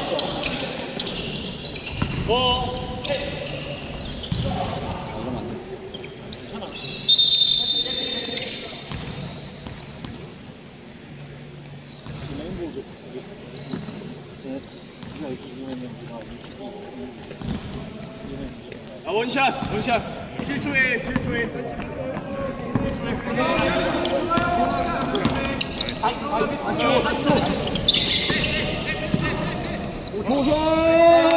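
Basketball game on a hardwood court: the ball bouncing, with players and coaches shouting, all echoing in a large gymnasium. A short high whistle sounds about seven seconds in.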